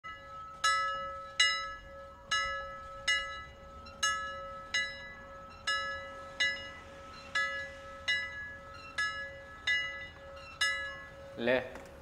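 Intro music: a bell-like chime note struck again and again, about once every three-quarters of a second, over a steady held tone. A man's voice comes in just before the end.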